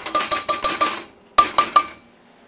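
A metal spoon tapping a stainless steel measuring cup to knock cocoa powder out into a saucepan. There is a quick run of about five ringing metal taps, a short pause, then three more.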